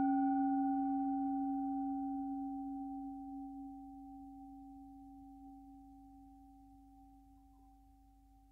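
A singing bowl ringing out after a single strike: one low, steady tone with fainter higher overtones that die away within the first few seconds, the whole sound slowly fading almost to nothing.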